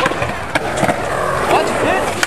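Skateboard wheels rolling over rough concrete, with a couple of short sharp clacks from the board.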